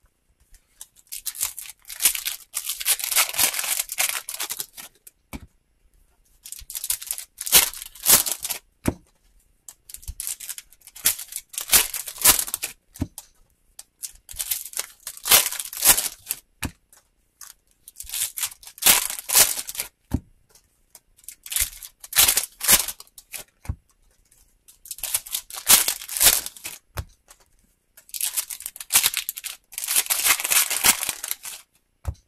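Sealed trading-card packs being torn open and their foil wrappers crinkled by hand, in rustling bursts every few seconds, with short clicks of cards being handled between them.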